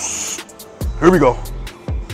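Background hip-hop music with a steady beat, over a lifter's sharp hissing breath at the start and a short strained vocal groan about a second in, between heavy barbell squat reps.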